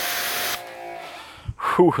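Water jet spraying onto a painted car hood: a steady hiss that cuts off suddenly about half a second in.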